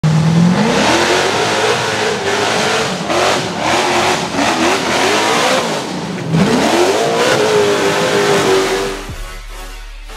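Rock-racing buggy engine revving hard under load on a rock climb, its pitch sweeping up sharply twice, about half a second in and again about six seconds in, and holding high between. The engine sound drops away near the end.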